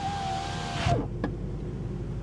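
A car's electric power window motor whirring steadily as the driver's door glass moves, stopping suddenly about a second in with a soft clunk, followed by a low steady hum.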